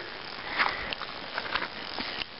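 Steady outdoor background hiss beside a river, with a few faint scattered ticks.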